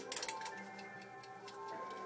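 Mechanical wind-up kitchen timer ticking just after being wound and set, with a few sharp clicks at the start. Faint music plays underneath.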